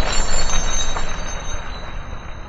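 Logo-reveal sound effect for an animated intro: a noisy metallic rush with high, steady ringing tones, fading out steadily.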